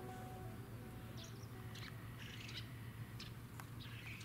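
Faint, scattered bird chirps, about five short calls, over a quiet background with a steady low hum.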